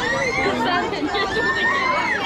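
Crowd chatter: many voices talking at once, with some high-pitched voices calling out over the rest.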